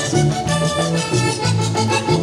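A live vallenato band plays an instrumental passage in merengue rhythm. The diatonic button accordion carries the melody over a bouncing electric bass line, electric guitar and hand percussion.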